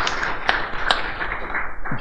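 Audience applause, dying away near the end, with a few separate claps standing out.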